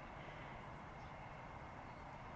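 Faint, steady outdoor background noise with a low rumble and no distinct sound events.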